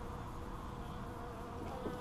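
Honeybees buzzing in flight at a hive entrance, a steady hum with a faint held tone.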